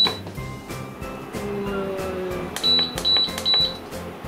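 Electric cooktop's control panel beeping as it is switched on: one short high beep, then three more in quick succession near the end.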